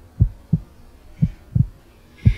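Heartbeat sound effect: two slow lub-dub beats, each a pair of low thumps, about a second apart.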